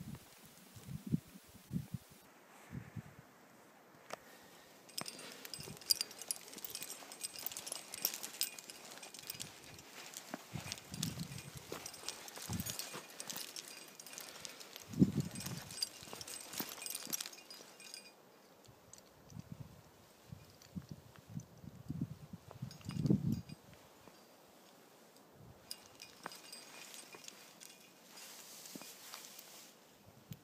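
Faint, irregular dull knocks and rustling crackle, with a denser stretch of crackle from about 5 to 17 seconds in: handling noise from the hand-held camera being moved.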